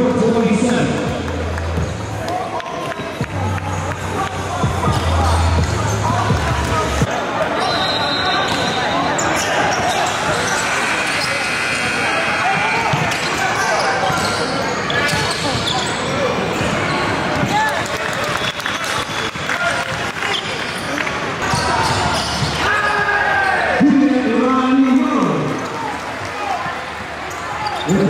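A basketball dribbling on a hardwood court during live play, with indistinct shouting voices.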